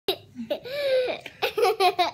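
High-pitched laughter: a long drawn-out squeal of a laugh, then a run of quick short bursts.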